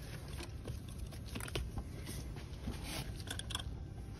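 Faint scattered clicks and light handling taps over a low steady rumble.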